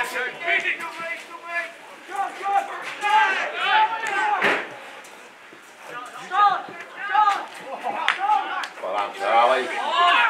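Players and spectators at an Australian rules football match shouting and calling out in overlapping bursts, with a few sharp knocks among them, the loudest about halfway through.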